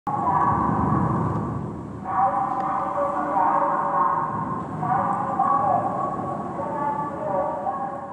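Film soundtrack: a droning chord of several held tones that shifts about two seconds in and again about five seconds in, over a low rumble.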